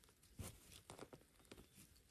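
Faint, scattered crackles of dry pine needles and loose soil as fingers clear around a mushroom in the ground, with near silence in between.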